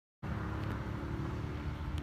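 Kia Frontier K165 light truck's diesel engine idling steadily.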